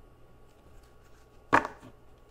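A deck of tarot cards set down on a tabletop: a single sharp knock about a second and a half in.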